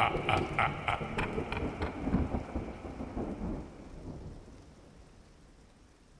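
Thunderstorm ambience of rumbling thunder and rain, fading away to near silence over about five seconds. A high pulsing call, about three pulses a second, runs over it and stops about a second and a half in.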